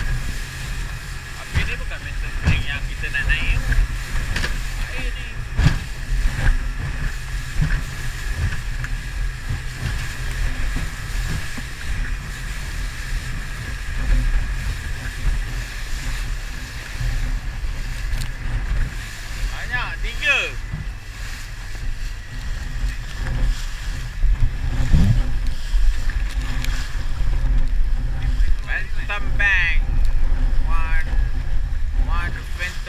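Small aluminium fishing boat under way through choppy sea: a steady motor whine over a heavy rumble of wind on the microphone and the hull slapping the waves.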